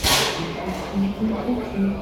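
A single sharp crash from the drum kit right at the start, ringing out briefly, followed by low talking.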